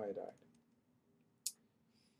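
A man's voice finishes a word, then near silence is broken by a single short, sharp click about one and a half seconds in.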